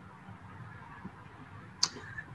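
Faint microphone room hiss during a pause in speech, with one short, sharp click near the end.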